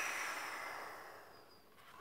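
A woman blowing one long breath of air through pursed lips, fading out over about a second and a half.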